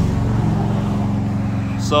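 A motor running: a steady low drone that carries on evenly throughout.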